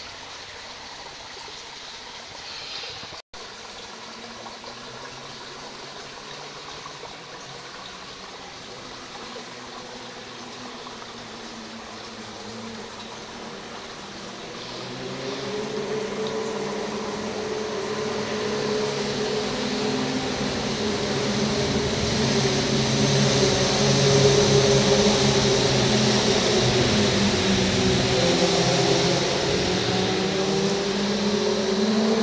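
Muffled creek water heard through a camera held under the surface: a steady low rush that grows louder from about halfway through, joined by a steady hum of several low tones.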